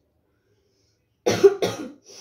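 A woman coughs twice in quick succession, about a second and a quarter in: the harsh coughs of someone eating extremely spicy ramen noodles.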